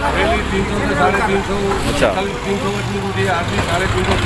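A motor vehicle engine idling steadily, under indistinct voices of people around.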